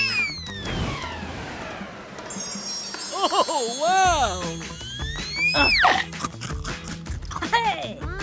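Cartoon soundtrack: background music with a twinkling chime effect about two seconds in, and short wordless, swooping cartoon voice sounds from an animated creature.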